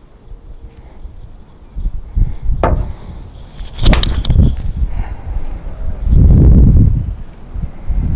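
A one iron striking a golf ball cleanly off a hard surface: a single sharp crack about four seconds in. Low wind rumble on the microphone follows it.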